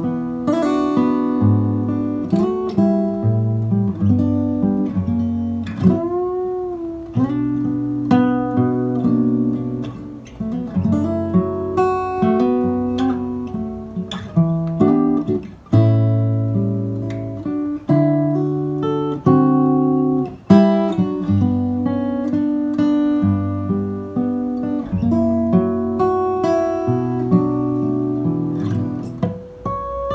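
Acoustic guitar played fingerstyle with a capo: plucked bass notes under a melody and chord tones. About six seconds in, one note bends up and back down.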